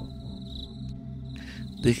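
A high, steady insect-like trill that breaks off for about half a second in the middle, over a low steady hum. A man's voice comes in near the end.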